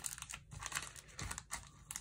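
Plastic trading-card sleeves being handled, crinkling in a string of irregular soft crackles.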